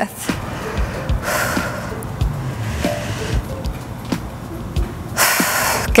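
Background music with a steady beat, over which a person breathes out hard twice: a long breath about a second in and a shorter, stronger one near the end.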